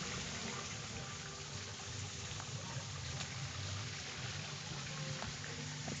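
Water running steadily in a backyard goldfish pond, a continuous even trickle.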